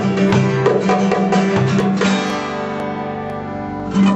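Steel-string acoustic guitar strummed, then a last chord left ringing and fading from about halfway through.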